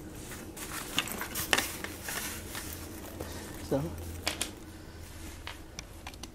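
Ape Case ACPRO1700 sling camera backpack being handled: its plastic buckles and nylon straps give a few scattered sharp clicks and knocks.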